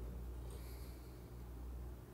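Quiet room tone with a steady low electrical hum and a faint hiss.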